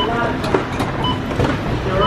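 People talking over a steady low rumble, with short high beeps about a second apart.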